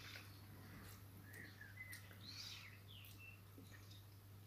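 Near silence: room tone with a steady low hum and a few faint, short high chirps.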